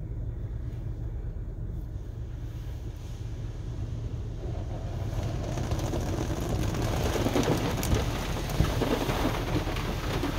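Heard from inside a pickup cab: water jets of a Ryko SoftGloss XS car wash spraying onto the windshield and body, a hiss that starts about five seconds in and grows louder. A low steady rumble runs underneath.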